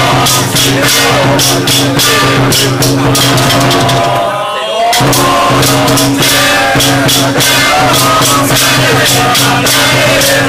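Temple ritual music: fast, steady drum and cymbal percussion over a held low drone, with voices chanting. It drops out briefly about four and a half seconds in.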